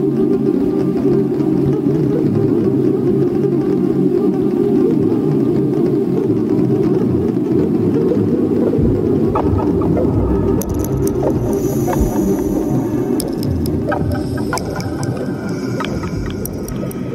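Slow ambient meditation music built on a steady, dense low drone. Thin higher tones and a high shimmer come in over it about ten seconds in.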